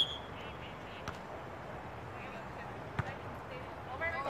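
A volleyball being struck: sharp pops at the start and about three seconds later, with a fainter one in between, over distant voices and a steady outdoor background hiss.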